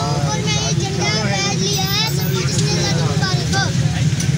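A child's voice speaking over a steady low rumble.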